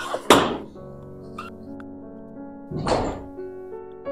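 Background music with steady sustained notes, over which a wooden door bangs shut once, sharply, just after the start. About three seconds in there is a second, softer brief noise.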